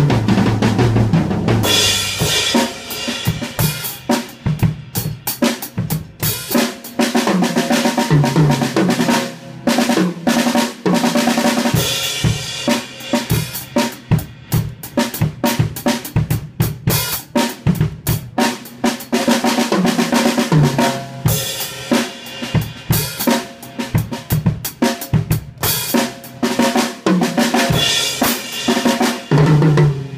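Acoustic drum kit played hard with sticks: snare, bass drum, toms and cymbals in a busy groove broken by fast fills. Cymbal crashes wash over it again and again, and deep tom hits ring out at the start and near the end.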